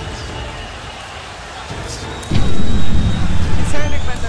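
Low crowd hubbub at a boxing match, then a loud, deep bass boom from a movie-trailer style soundtrack about two seconds in, which rumbles on for over a second.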